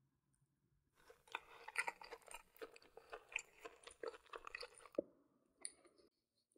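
Close-up chewing of a breaded McDonald's chicken nugget: a run of crisp crunches starting about a second in, ending with a sharp click near the end.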